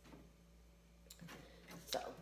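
Faint handling noises of paper craft pieces on a tabletop: a few light clicks and rustles in the second half, with a spoken word just at the end.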